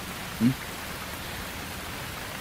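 Heavy rain falling steadily, an even hiss of water on the ground, with a brief low vocal sound about half a second in.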